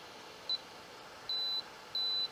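An electronic DC load's buzzer beeps in one high, steady tone as its rotary knob is turned: a short beep about half a second in, then two longer beeps near the end. The longer beeps are its warning that the set current has gone over the unit's 150 W power limit. Its cooling fan gives a faint steady whoosh underneath.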